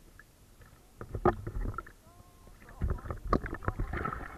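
Sea water sloshing and splashing against a camera held at the waterline, in two bursts: one about a second in, and a longer one near the end.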